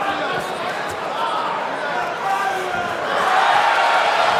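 Arena crowd noise, many voices shouting and talking at once, growing louder about three seconds in.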